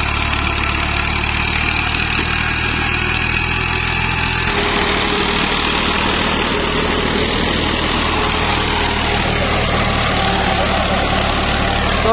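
Tractor engine running steadily as it pulls a disc harrow through dry field soil. The sound changes abruptly about four and a half seconds in.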